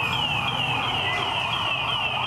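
A fast electronic siren: a high falling sweep repeating about three times a second, over steady street noise.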